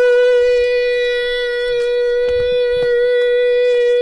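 One long, loud horn blast held at a single steady pitch, with a few faint clicks over it.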